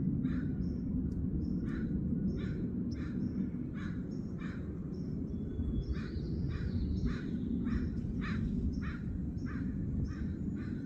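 Birds calling over and over, short calls about two a second, over a steady low rumble.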